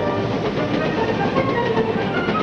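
Cartoon sound effect of a moving train running along the rails, a continuous rumble and clatter.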